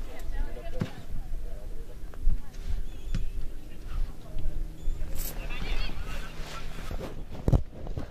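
Outdoor football pitch sound: a ball kicked with a short knock about a second in and a few more knocks later, over a low rumble of wind on the microphone, with faint distant shouts from players.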